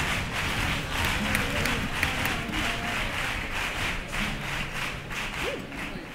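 Theatre audience applauding, a dense spread of hand clapping with a few voices calling out in the crowd, fading near the end.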